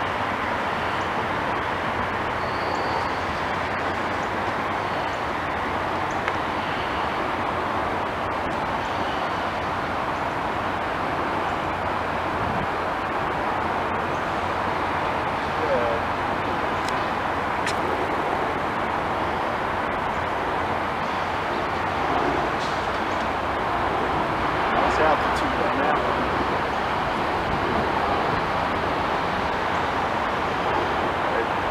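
Steady urban background noise, an even traffic-like hum, with a few faint short sounds in the middle and near the end.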